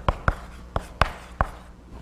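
Chalk writing a word on a blackboard: about five sharp taps and short scratches over the first second and a half.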